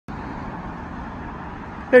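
Steady low hum of distant road traffic, even throughout, with a faint tone running through it.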